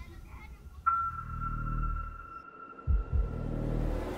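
Dramatic film sound design: a sudden high, steady tone held for about three seconds over a low rumble, with two low thuds about three seconds in. A rising swell of noise begins near the end.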